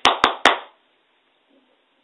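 A few quick hand claps, about four a second, with a short room echo after the last. The man is demonstrating clapping.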